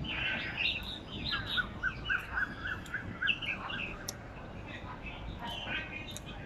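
Outdoor birdsong: several birds chirping and calling, with a run of about nine quick, evenly spaced notes, about four a second, in the middle.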